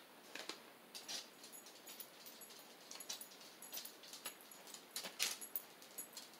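Quiet handling sounds: a few faint, scattered clicks and taps as small glass beads are pressed onto a CD on a paper plate and a hot glue gun is handled.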